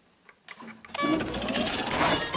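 A few faint clicks of clear plastic toy packaging being handled, then background music starts abruptly about a second in and becomes the loudest sound.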